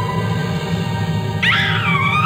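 Eerie background music; about one and a half seconds in, a woman's high-pitched scream of fright cuts in with a sharp rising glide and wavers on.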